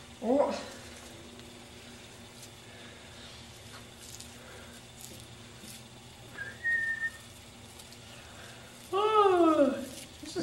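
Quiet room tone, with a short, high, steady whistle about six and a half seconds in and, near the end, a person's voice sliding down in pitch for about a second.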